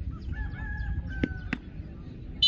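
A drawn-out animal call lasting about a second, holding one pitch and stepping down slightly near its end, followed by two sharp knocks.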